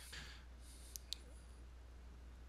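Two quick computer-mouse clicks about a second in, a fraction of a second apart, over a faint steady low hum.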